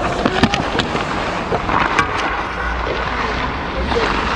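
Ice hockey skates carving and scraping across the ice, heard close up on a body-worn action camera, with several sharp clacks of stick and puck in the first second and another about two seconds in.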